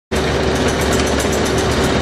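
Gramac stainless steel tabletop conveyor running, its Delrin-style tabletop belt making a fast, even clatter over a steady hum from the ¾ hp drive and variable-speed gearbox.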